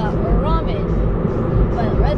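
Steady low rumble of road and engine noise inside a moving car's cabin. A woman's voice is heard briefly near the start.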